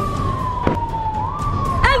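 A police siren wailing in one slowly gliding tone that sinks in pitch, swings back up about a second and a half in, then sinks again. A single sharp crack sounds about two-thirds of a second in.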